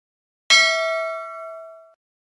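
Notification-bell 'ding' sound effect for the animated subscribe bell icon: a single struck bell-like tone about half a second in that rings and fades, then cuts off suddenly.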